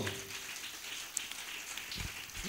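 A congregation applauding: a faint, even patter of many hands clapping.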